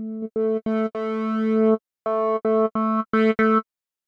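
Software synthesizer patch (Omnisphere, Juno 60 Sub PWM wavetable through a basic 12 dB low-pass filter) playing repeated notes on one pitch. One longer held note about a second in swells louder. The sound is brighter in the later notes as the filter cutoff is opened.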